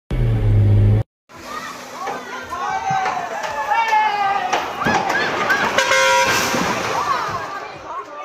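A heavy truck's engine runs loudly for about a second. After a sudden cut come several seconds of bystanders' excited voices, with a short horn toot about six seconds in.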